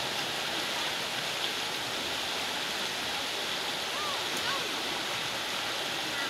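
Steady rush of a shallow river running fast over rocks through whitewater riffles.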